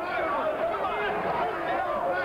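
Speech only: a man's commentary voice talking without a break, over faint crowd noise.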